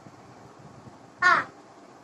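A crow cawing once, a short harsh call falling in pitch, a little after a second in.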